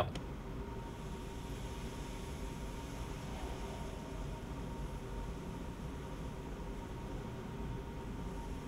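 Steady low hum and hiss of a laboratory fume hood's extraction fan, unchanging throughout.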